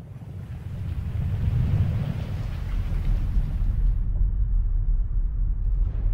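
Cinematic logo sound effect: a deep rumble under a windy rush that swells over the first two seconds. About four seconds in the airy hiss falls away, leaving the low rumble.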